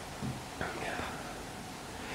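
Faint breathy vocal sounds, a quarter of a second in and again about half a second later, over a steady low hiss: a man drawing breath before answering a question.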